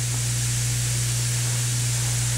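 Steady low electrical hum with an even high hiss, unchanging throughout.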